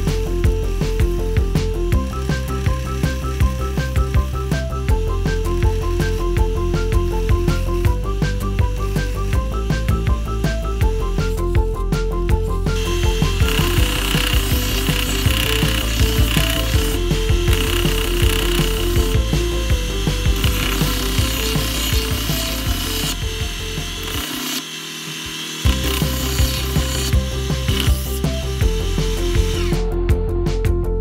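Background music with a steady melody, joined about halfway through by a bench belt sander grinding a clamped wooden panel, a steady rough hiss that runs on under the music with a brief break near the end.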